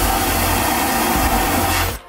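Loud, steady rushing hiss inside an airliner lavatory, cutting off suddenly at the end.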